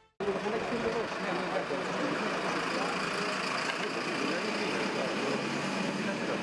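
Steady street noise with a vehicle engine idling and faint voices, starting abruptly just after the start.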